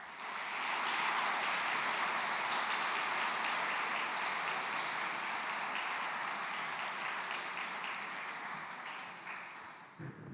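Audience applauding: the clapping starts suddenly, holds steady and fades away near the end.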